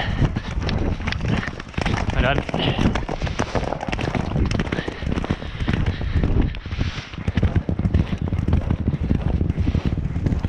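A horse galloping, heard from the saddle: quick hoofbeats on turf with the rumble of wind and movement on the microphone. The rider gives a sigh about two and a half seconds in.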